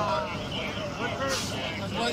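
Voices talking at a roadside crash scene over a low steady hum, with a short burst of hiss about a second and a half in.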